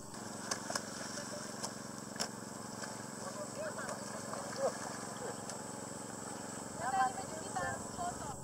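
Indistinct voices of a group of people calling to one another, over a steady low hum, with a few sharp clicks in the first seconds.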